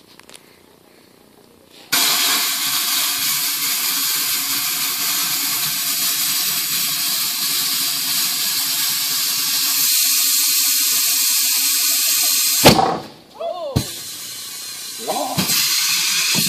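Compressed air hissing steadily from an air hose at a trailer tire, with the bead not yet seated, starting about two seconds in and running for about ten seconds. It stops suddenly with a loud thump, followed by a quieter hiss.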